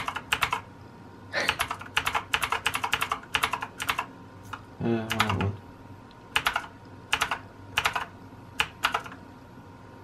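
Keys of a backlit gaming keyboard clicking as they are pressed, first in quick runs, then in short groups of taps a second or so apart. A brief voice sound comes about five seconds in.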